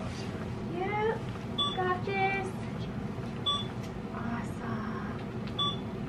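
Hospital bedside medical equipment sounding short, identical electronic beeps about every two seconds, over soft voices in the room.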